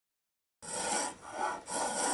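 Silence for about half a second, then a metal spokeshave shaving a curved wooden edge in quick, even strokes, about two a second, each a rough rasping scrape.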